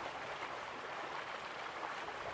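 Steady rushing of flowing stream or river water, an even, unbroken sound.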